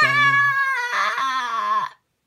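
A long, loud, high-pitched wailing cry lasting nearly two seconds, sliding slowly down in pitch before cutting off.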